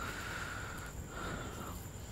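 Faint rustling and rubbing of textile and leather motorcycle gloves being picked up and handled, in two short stretches.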